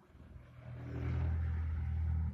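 Low, steady engine rumble that swells over the first second and then holds.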